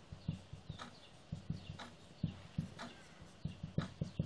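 Marker pen writing on a whiteboard: a quiet, irregular run of short taps and brief scratchy strokes, several a second, as each letter is written.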